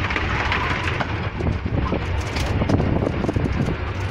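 Miniature railway train running, its coach rattling and clattering along the track over a steady low rumble.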